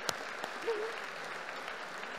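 Audience applauding steadily, many hands clapping.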